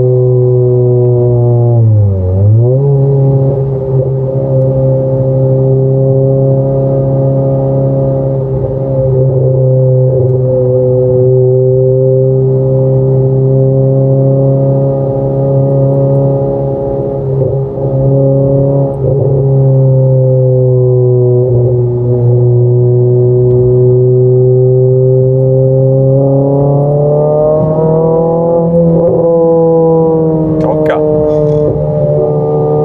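Renault Clio RS's four-cylinder engine droning steadily at cruising revs, heard from inside the cabin. The pitch dips sharply for a moment about two seconds in, then returns, and it climbs a little near the end.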